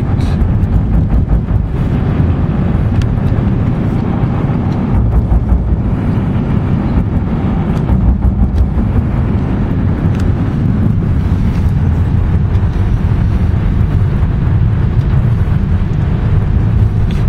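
Road and wind noise of a moving car heard from inside: a loud, steady low rumble with faint scattered ticks.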